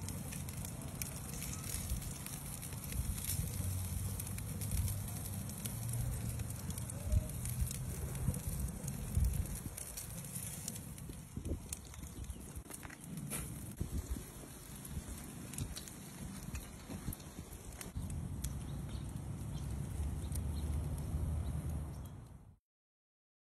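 Western red oak logs burning in an open grill firebox, crackling and popping now and then over a steady low rumble.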